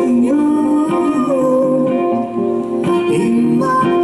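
Live music: a sung melody with drawn-out, gliding notes over acoustic guitar, with a second voice from the guitarist.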